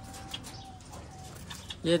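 Caged birds in an aviary calling softly: a few short, faint, steady notes in the first second, with light rustling.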